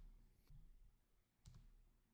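Near silence, with two faint clicks about a second apart from a computer's pointing device being clicked.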